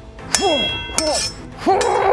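Steel arming swords clashing twice, about a third of a second in and again at about one second, each hit leaving the blades ringing. Short grunts or voice sounds follow near the end.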